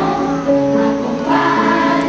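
A children's choir singing a song together in held, sustained notes.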